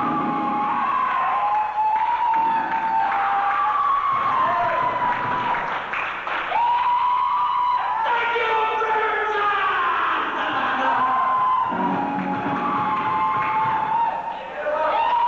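Hard rock band playing live. A lead line of long held notes slides and bends between pitches over the band.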